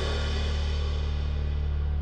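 Piano and drum kit: a low piano chord held steady while a cymbal struck just before rings out and fades.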